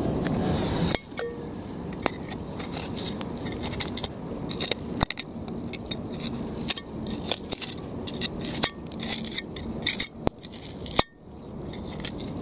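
Irregular small clicks, clinks and scrapes of grit, pebbles and shell in compacted river-foreshore mud as a buried clay tobacco pipe is wiggled and picked loose by hand.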